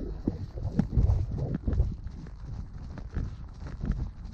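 A pony's hoofbeats on a soft grass track: a repeating run of dull, low thuds, a few a second, as it moves on briskly under a rider.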